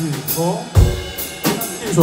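Drum kit playing a steady beat, with regular hi-hat ticks and a heavy kick-drum hit just past the middle, while a man talks into a microphone over it and laughs near the end.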